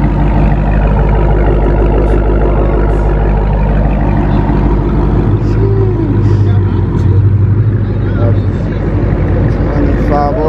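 Widebody Dodge Challenger's V8 idling steadily through its exhaust, heard from behind the car. The low rumble swells slightly for a few seconds mid-way.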